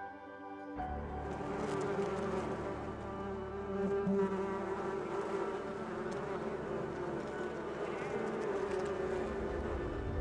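A honeybee colony buzzing on the comb: a dense, steady hum that comes in suddenly about a second in, after soft music.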